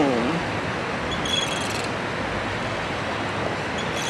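Steady, even outdoor background noise, with a faint short high chirp about a second in.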